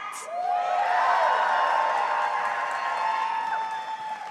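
Audience cheering and whooping over applause, many voices at once, swelling about half a second in and fading near the end.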